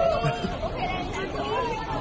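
Overlapping chatter of several people talking at once, with indistinct crowd babble behind.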